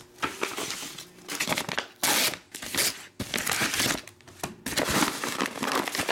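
Manila paper envelopes being handled and opened: paper rustling and crinkling in a run of short bursts, the loudest about two seconds in.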